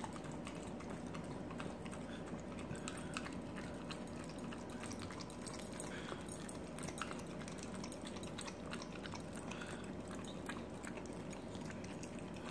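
A dog licking and chewing soft frosted cake: a continuous run of small, irregular wet clicks and smacks from tongue and mouth.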